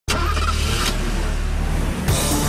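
A car engine running loudly and steadily, starting abruptly, with a brief rush of noise about a second in.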